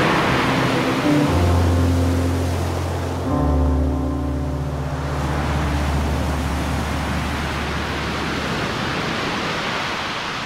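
Ocean surf washing steadily up a beach, under background music of long, low held notes that shift to new notes about a second in and again a little past three seconds in.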